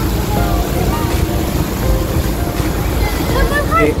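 Steady low rumble of a passenger boat under way, its engine and the rush of its wake mixed with wind on the microphone. Voices chatter in the background, and near the end several people call out, one saying "hello".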